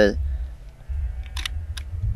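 Wind rumbling on the microphone, with a few faint, sharp camera clicks in the second half as a long bulb exposure is brought to an end.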